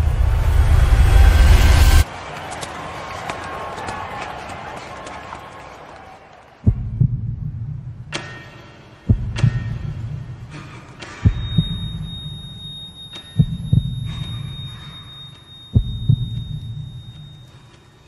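Sound design for a slow-motion scene: a loud low rumbling swell that cuts off suddenly about two seconds in and fades into a hiss. Then come slow, heavy, heartbeat-like thuds about every two seconds, with a thin high ringing tone joining about halfway through.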